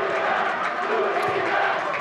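Football stadium crowd cheering and clapping after a penalty goal, a steady wash of voices and applause.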